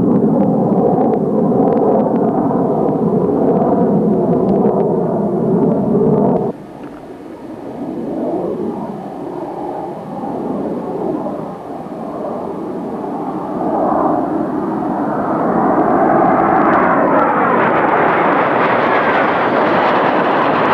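Jet engine of a de Havilland Venom (its single Ghost turbojet) running loud, with pitch slowly gliding. About six and a half seconds in the sound drops off suddenly. It stays quieter with a wavering pitch, then builds back up from about fourteen seconds and grows louder and brighter.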